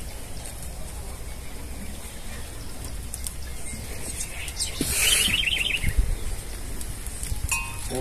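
A goat bleating once, a short high call about five seconds in, over a steady low rumble.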